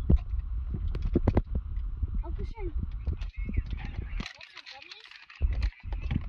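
Handling noise as the old cabin air filter is held and moved: a low rumble with several sharp knocks and clicks in the first second and a half, going quieter about four seconds in.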